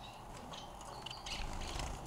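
Caged society finches (Bengalese finches) giving a few short, soft high chirps over faint room noise.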